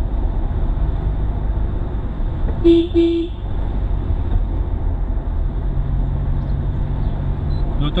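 Steady engine and road rumble inside a moving car's cabin. About three seconds in, a car horn gives two short toots.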